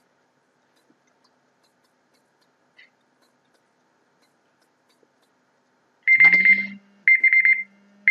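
Timer alarm going off with two bursts of rapid, high-pitched beeping about a second apart, signalling that the 30-second practice time is up. Before it there is near silence.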